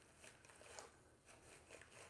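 Near silence, with faint scattered scratchy rustles of a detangling brush being pulled through thick natural hair.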